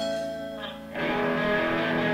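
Rock band recording with electric guitar: a held chord dies away over the first second, then after a brief dip the guitars come back in, fuller and louder.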